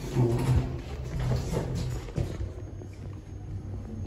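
A 2019 Kone MonoSpace passenger lift working, heard from inside its glass car: a low steady hum and rumble from its doors and drive, loudest in the first second and a half and easing after that.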